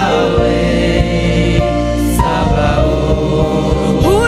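A group of worship singers holding long, steady notes in gospel praise music, over instrumental accompaniment with a steady beat.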